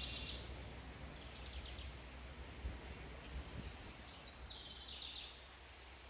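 A songbird singing in the background, with a faint short phrase about a second and a half in and a clearer phrase about four seconds in. Under it lies a faint steady low rumble of outdoor background noise.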